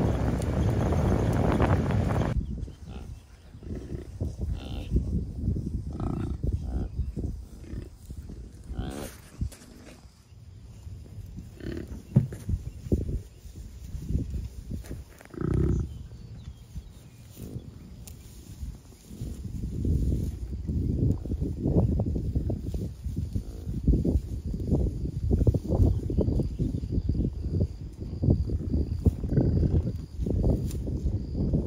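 American bison grunting, with a long low grunt in the first two seconds, then scattered softer low grunts that come thicker toward the end.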